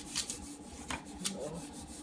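Laminate paper sheet being handled, rustling and rubbing in a series of short scrapes.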